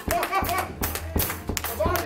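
Church music with drums and a held low bass note, with hands clapping in rhythm and voices calling out over it.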